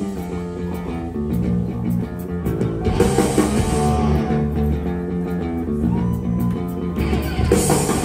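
Punk rock band playing live: distorted electric guitars, bass guitar and drum kit, with no vocals. The cymbals get louder about three seconds in and again near the end.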